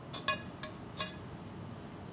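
Metal slotted spoon clinking against a stainless-steel skillet as toasted breadcrumbs are scraped out, three short ringing clinks in the first second.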